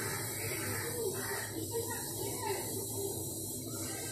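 Steady hiss of a lit gas stove burner heating a kadhai, with faint voices in the background.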